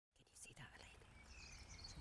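Near silence: faint outdoor ambience with quiet whispering and a few thin bird chirps.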